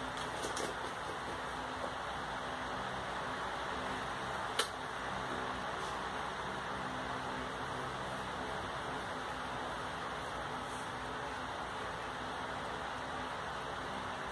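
Steady faint hum and hiss of a small motor, with one short click a little past four seconds in.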